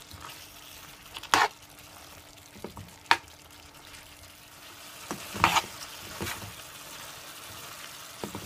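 Beef and broccoli stir-fry sizzling in a pan while a metal spoon stirs it. The spoon knocks against the pan about four times.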